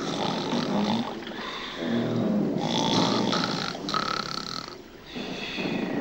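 Cartoon snoring from sleeping sailors: several long snores one after another, some ending in a whistling note on the out-breath.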